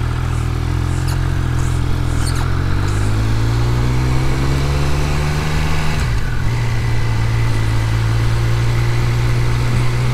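Triumph Speed Triple 1200 RS inline three-cylinder engine heard from the saddle, pulling at low speed. Its note rises steadily, drops sharply about six seconds in as with an upshift, then runs on evenly.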